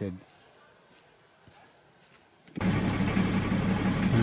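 Near silence, then about two-thirds of the way through the sound of a 60 Series Toyota LandCruiser driving cuts in suddenly, heard from inside the cabin: a steady low engine hum over tyre and road noise on packed snow and ice.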